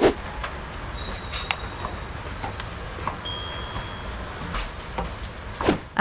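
Railway station ambience: a steady low rumble with scattered small clicks, a sharp click at the very start and a brief high electronic tone about three seconds in.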